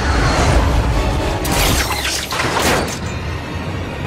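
Film soundtrack: music over a deep rumble, with two crashing bursts about a second apart around the middle.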